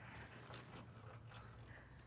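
Near silence: a low steady hum with a few faint, scattered mechanical clicks.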